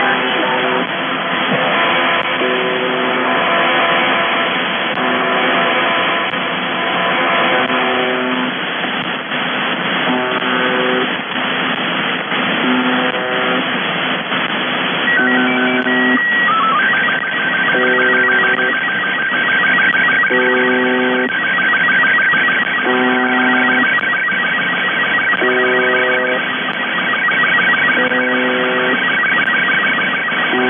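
Shortwave receiver audio of UVB-76 'The Buzzer' on 4625 kHz: a low buzz rich in overtones, about a second long, repeating every two and a half seconds over hiss and interference. About fifteen seconds in, an SSTV picture transmission starts on top of it. A brief high leader tone is followed by a steady, rapidly ticking warble of image tones.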